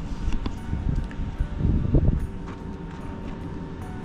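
Irregular low rumble of wind and handling noise on a handheld camera's microphone as the camera is swung around, with a faint steady hum underneath.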